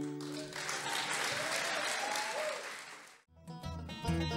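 Audience applauding after the last notes of a fiddle-and-guitar tune ring out. The applause fades slightly and then stops abruptly a little past three seconds in. Another band's string music, with low bass notes, starts just before the end.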